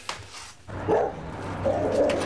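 Brief light clatter and rubbing at a kitchen counter, then two loud bark-like calls: one about a second in and a second near the end.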